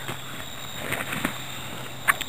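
Faint rustling and a few soft knocks as small gear pouches are pushed into a nylon stuff sack, over a steady chorus of insects.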